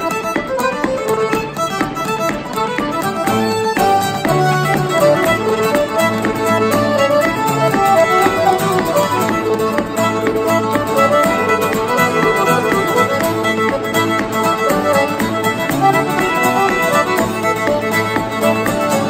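Fiddle, piano accordion and acoustic guitar playing a traditional contra dance tune together, the fiddle carrying the melody over the accordion and guitar accompaniment.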